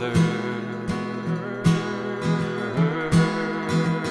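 Song accompaniment with no singing: acoustic guitar strumming, the strokes falling at a steady pace about every three-quarters of a second over held chords.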